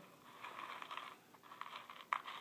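Faint, irregular rustling and rattling of small dry hamster food pebbles in a plastic tub, as a peanut-butter-coated piece of apple is rolled around in them.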